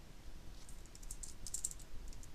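Faint typing on a computer keyboard: scattered keystrokes, a short run of them just over half a second in and another near the end.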